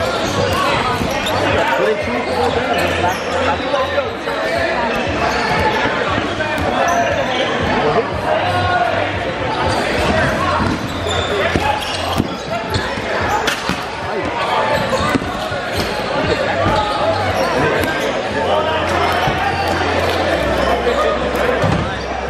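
Rubber dodgeballs bouncing and slapping on a hardwood gym floor, many short scattered impacts, over the steady chatter of a crowd of players, echoing in a large hall.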